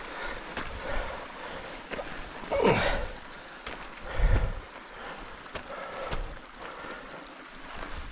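A climber's heavy, effortful breathing on a steep scree slope, with a falling groan of effort about three seconds in, over the scrape and crunch of loose shale underfoot. A low rumble on the microphone about four seconds in.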